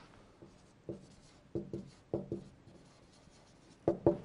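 Felt-tip marker writing on a whiteboard: a series of short, faint strokes, with a louder short sound just before the end.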